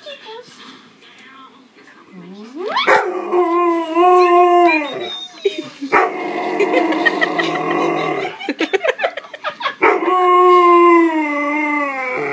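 Alaskan Malamute howling in long, wavering held calls. The first rises into a howl about three seconds in, rougher vocal sounds follow, and a second long howl begins near the end.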